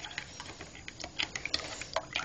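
A spoon stirring a drink in a ceramic mug, clinking against the sides in quick, irregular taps.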